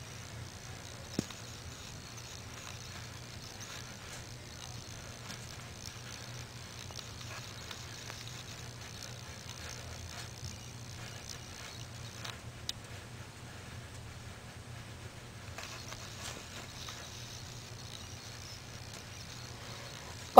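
Faint scratching and rustling of a savannah monitor's claws on sand substrate as it moves about, over a low steady hum. A sharp click about a second in.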